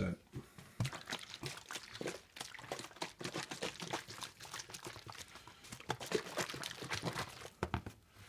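Water and soluble cutting oil sloshing and knocking inside a capped plastic squeeze bottle as it is shaken hard to mix the coolant emulsion, a rapid uneven run of splashes that stops near the end.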